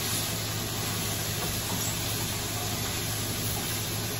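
Shredded vegetables sizzling in a large frying pan as they are stirred with a spatula, a steady hiss over a low hum.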